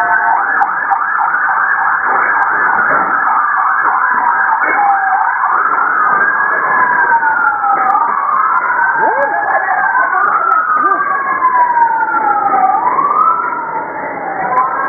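Sirens of armored security vehicles, more than one overlapping: quick up-and-down yelping sweeps at first, then slow rising and falling wails every two to three seconds.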